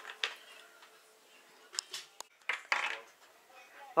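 A few light, scattered clicks and knocks of small hard-plastic toy shapes being handled and set down on a tabletop.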